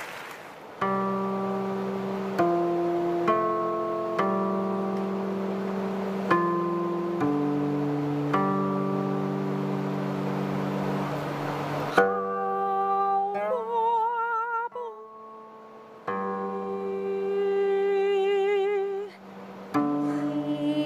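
Guqin (seven-string zither) played solo: single plucked notes that ring on and slowly decay, entering as the last applause fades. About twelve seconds in, a woman's voice begins singing with vibrato over the guqin accompaniment.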